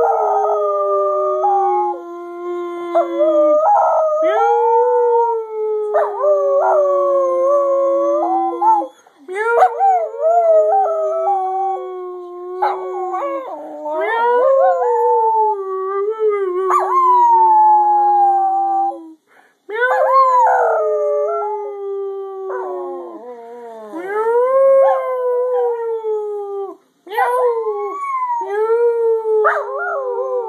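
A small terrier dog howling in long, wavering howls that slide up and down in pitch, each lasting several seconds, with three short breaks between them.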